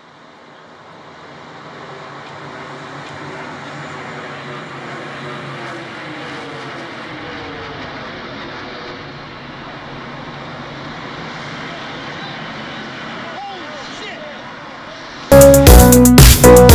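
Jet engines of a low-flying airliner, American Airlines Flight 11, a Boeing 767, passing overhead: a steady rushing noise that swells over the first few seconds and falls in pitch as the plane goes by. Loud electronic dance music with heavy drums cuts in suddenly near the end.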